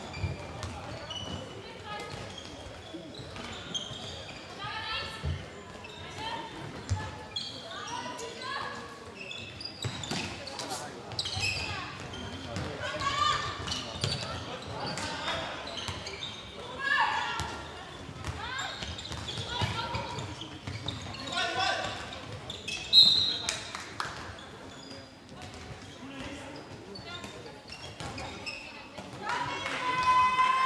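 Handball match sounds in an echoing sports hall: the ball bouncing on the court and players' shouts and calls, with one loud sharp impact about three-quarters of the way through.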